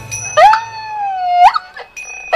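Erhu playing one long bowed note: it slides up into the note, sinks slowly in pitch for about a second, then flicks sharply upward and breaks off.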